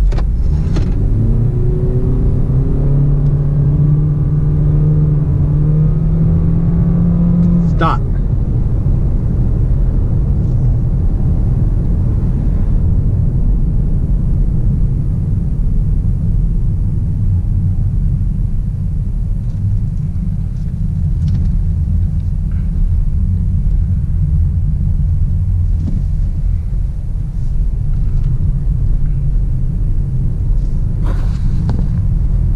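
Honda Clarity accelerating from a start in Econ EV mode, heard from inside the cabin. A low drone rises slowly in pitch as speed builds over the first eight seconds. A sharp click comes about eight seconds in, then the car runs on with a steady tyre and road rumble.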